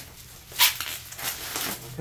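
Plastic bubble wrap crinkling and rustling as it is pulled off a packed device, with one sharp crackle about half a second in and a few softer rustles after.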